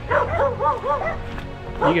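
A dog barking in a quick run of about four high yips in the first second, over steady background music.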